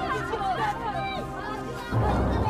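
Indistinct voices chattering, with no clear words, over quiet background music with steady low tones.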